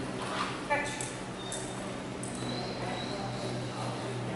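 Three sharp clicks spaced about half a second apart, starting about a second in, over a steady low hum.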